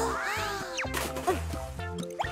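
Cheerful children's cartoon music with cartoon sound effects: rising, whistle-like pitch glides in the first second and a quick sliding squeak near the middle.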